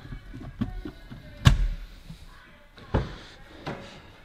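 A few short, sharp knocks with faint rustling between them, the loudest about one and a half seconds in and another about three seconds in.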